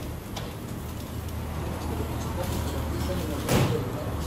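Steady low hum of an idling vehicle engine, with one loud knock or clatter about three and a half seconds in, as of a wheeled stretcher being handled beside the ambulance.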